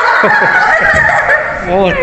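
Paper gift bag and tissue paper rustling, with handling bumps, as a present is unwrapped. High-pitched excited voices sound over it, and a woman says "Oh" near the end.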